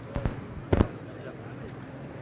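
Two sharp knocks about half a second apart, over faint background voices.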